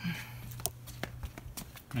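Steady low hum with a few faint clicks and rustles of a handheld camera being moved.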